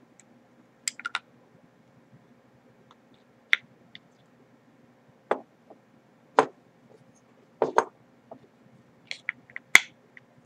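About ten sharp, irregular clicks and taps from handling a Reo vape mod while a tight-fitting 18650 battery is worked into it and the mod's parts are fitted back together.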